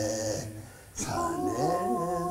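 A woman and a man singing slowly together with no accompaniment, in held notes. A held note fades out about half a second in, and a new phrase begins about a second in, one voice gliding upward.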